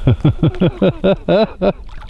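A man laughing heartily: a quick run of about ten falling "ha" pulses that trails off near the end.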